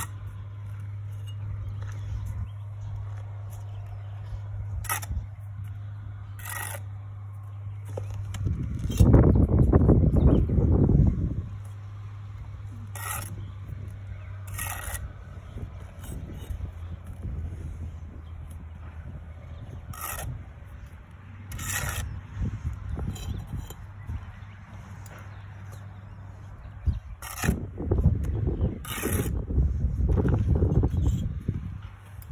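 Small trowel scraping and tapping on bricks and mortar as bricks are laid one after another, with short sharp scrapes every couple of seconds over a steady low hum. A loud low rumble sets in about nine seconds in and lasts a few seconds.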